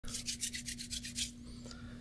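Hands rubbing together briskly, a run of about eight quick hissing strokes a second that fades out after just over a second. A faint steady hum lies underneath.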